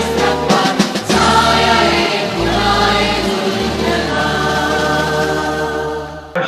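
Choral music: a choir singing over instrumental accompaniment with long held bass notes.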